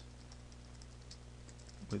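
Computer keyboard typing: a quick run of light key clicks, over a steady low hum.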